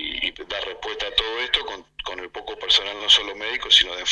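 Speech only: a man talking over a telephone line.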